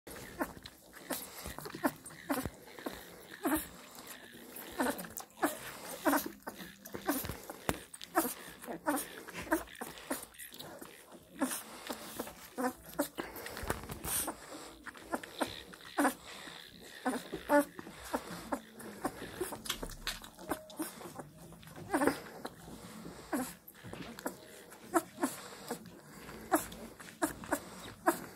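Irish Wolfhound puppy suckling from a feeding bottle: a run of quick, irregular wet sucking and smacking sounds, two or three a second, with short squeaks among them.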